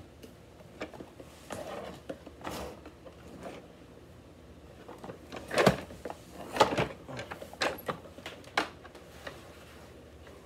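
Power cord being wound around the cord hooks of an upright vacuum cleaner: scattered rustles, clicks and plastic knocks as the cord and the vacuum body are handled. The loudest are two sharp knocks a little past halfway.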